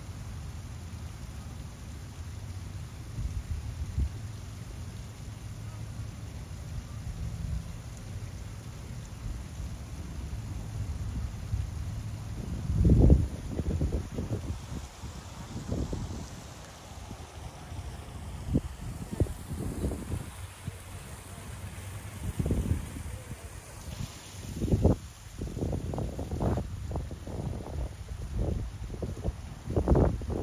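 Wind buffeting the microphone outdoors: a low steady rumble that turns into irregular gusts from about halfway through.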